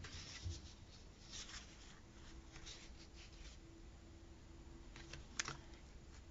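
Faint rustles and light taps of a paper sticker sheet being slid and set down on a desk, with one sharper tick near the end, over a faint steady room hum.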